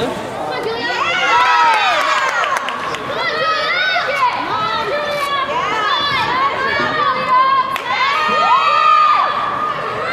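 Many high young voices cheering and shouting over one another, with long drawn-out calls, one held for about a second near the end.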